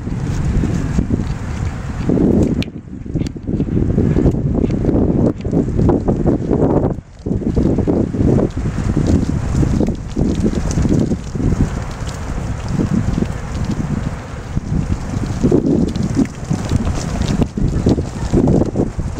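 Strong wind buffeting the microphone: a loud, gusting low rumble that rises and falls.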